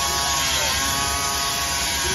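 Rhino 700 band sawmill, driven by its electric motor, sawing lengthwise through a log: a loud, steady buzz with a few held tones.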